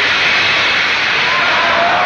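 A loud, steady rush of wind, a staged storm effect.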